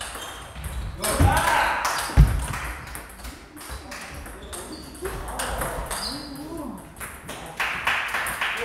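Table tennis ball clicking off paddles and table in a rally, with a couple of heavier thumps about one and two seconds in. Voices talk in the hall around the play.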